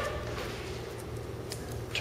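Steady low electrical hum of room tone, with two faint clicks, about a second in and again half a second later, as a key goes into the zinc-alloy coupler lock's round key core.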